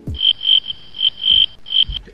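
A series of loud electronic beeps at one high pitch, about six in two seconds, some short and some held longer, irregularly spaced.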